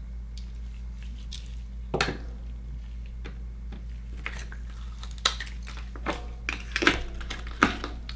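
Scattered sharp clicks and knocks of hand tools and an akoya oyster shell being handled on a wooden cutting board: a metal digital caliper set down, then a shucking knife and the oyster shell clinking and scraping, most of it in the second half. A steady low hum runs underneath.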